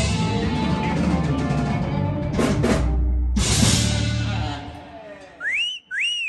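A live band of saxophone, drums, bass, electric guitar and keyboard playing the final bars of an instrumental, with a short break of drum hits about two and a half seconds in, ending about four and a half seconds in and ringing out. Near the end comes a two-part whistle, the first note rising and the second rising then falling.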